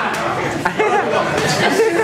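Several people chattering and talking over one another in a large, echoing room, with a few short sharp knocks among the voices.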